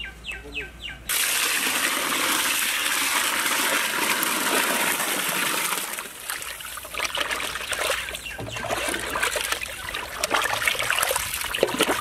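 Water poured steadily into a large aluminium pot of raw chicken pieces, starting suddenly about a second in and running for about five seconds. The chicken is then stirred through the water with a stick, giving irregular splashing and sloshing as it is washed.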